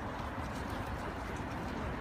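Steady outdoor ambience: an even wash of background noise with a low, fluctuating rumble underneath and no distinct event standing out.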